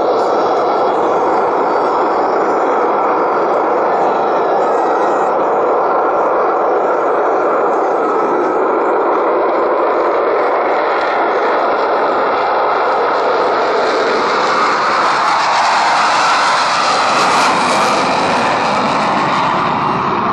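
Jet engines of four General Dynamics F-16 Fighting Falcons at takeoff power during a formation takeoff roll and climb-out: a loud, steady jet noise that turns harsher in the last few seconds.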